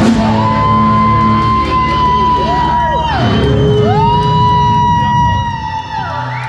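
Live rock band with electric guitars holding long, loud sustained notes that slide down in pitch and climb back up partway through, over a thick low bass rumble.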